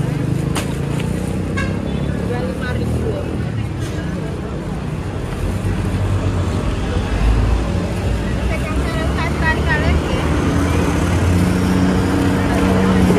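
Road traffic running steadily, a low engine drone from passing vehicles, with people's voices talking quietly underneath, clearest about nine seconds in.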